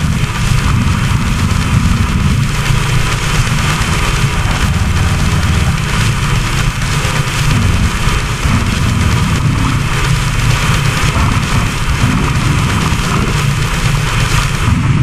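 Goregrind/death metal music: heavily distorted guitars and bass with fast drumming, a loud, dense wall of sound without vocals.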